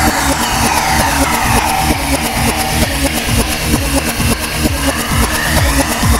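Electronic dance music from a DJ mix, with a steady kick drum. A filter-like sweep falls from bright to dull over the first couple of seconds and rises again near the end.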